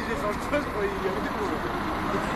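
Several people talking at a distance, their voices indistinct, over a steady rumble of street noise.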